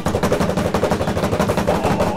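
A fast drum roll: a dense, even run of quick strokes building suspense.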